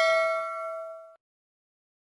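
Notification-bell ding sound effect: a single struck chime ringing out and fading, then cut off abruptly about a second in.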